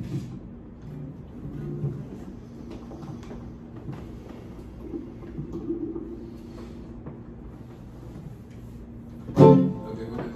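Guitars played softly, scattered plucked notes and quiet held chords, with one louder struck chord near the end.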